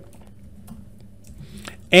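Typing on a computer keyboard: a quick run of faint key clicks.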